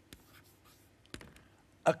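Chalk writing on a chalkboard: a faint run of short taps and scratches as a word is written out stroke by stroke, with one slightly sharper tap about a second in.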